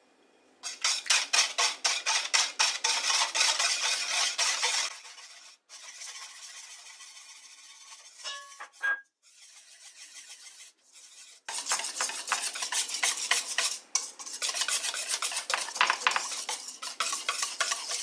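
Wire whisk beating batter in a stainless steel bowl, the wires scraping the metal in rapid strokes at about five a second. It goes quieter and slower in the middle for several seconds, then brisk whisking starts again. Flour is being mixed into the wet ingredients to work out the lumps.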